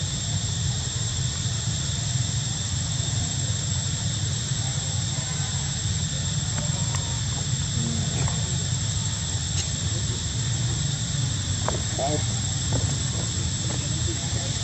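Steady outdoor background noise with a low rumble and a constant high whine, with faint distant voices coming through briefly about eight and twelve seconds in.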